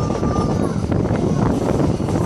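Moving train's running noise from the carriage window: a steady rumble of wheels on rails, with a thin high tone, like a wheel squeal, for the first part of a second.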